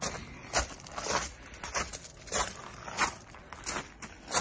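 Footsteps on a wood-chip path, about seven steps at an even walking pace.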